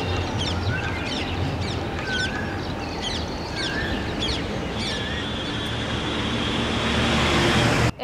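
Outdoor ambience of birds chirping repeatedly, with short whistled calls, over a steady wash of distant traffic noise. In the last few seconds the traffic noise swells, a steady high whine joins it, and the sound cuts off abruptly.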